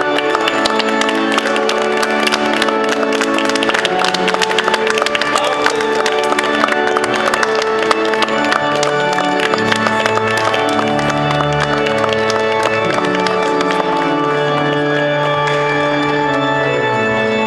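Organ music playing held chords, with the guests clapping through roughly the first ten seconds.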